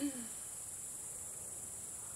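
Crickets chirring in a steady, high-pitched, unbroken chorus.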